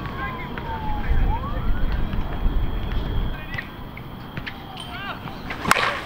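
An Anarchy Fenrir USSSA slowpitch bat striking a softball once, a single sharp crack near the end. Earlier, a faint wailing tone slides down and back up, like a distant siren, over low outdoor rumble.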